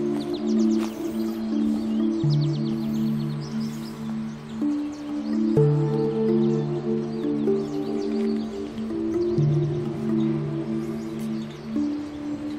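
Background music: slow, calm ambient music of held chords over a low bass note that changes every few seconds.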